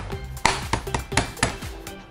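Chinese cleaver striking a raw mud crab on a wooden chopping board: a series of sharp knocks as the crab is cut and cracked, over background music.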